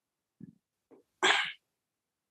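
A person sneezing once, about a second in, the loud burst coming after two short, softer sounds as the sneeze builds.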